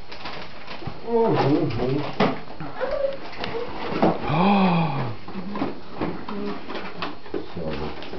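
A wrapped gift box being opened by hand, with crinkling and tapping. Low voices are heard, and about four seconds in one long 'ooh' rises and falls in pitch.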